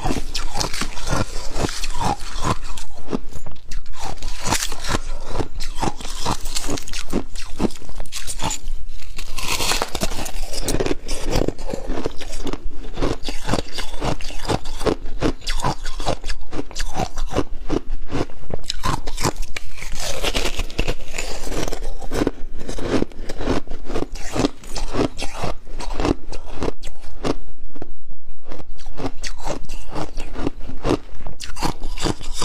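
Pink slushy ice being bitten and crunched close to a clip-on microphone, with a metal spoon scraping through crushed ice in a plastic tub. A dense, unbroken run of crunches and crackles.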